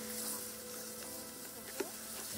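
A steady insect-like buzz holding an even pitch, with a faint click near the end.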